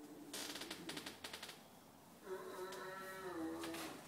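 A rapid fluttering burst of clicks, then about two seconds in a long, wavering animal call that drops in pitch at the end.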